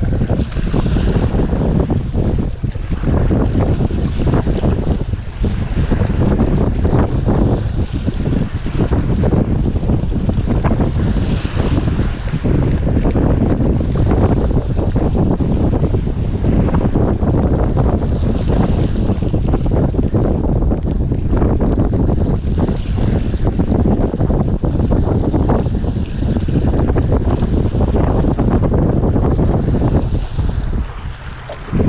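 Heavy wind buffeting the microphone over sea surf washing against jetty rocks, with a few louder washes of surf now and then.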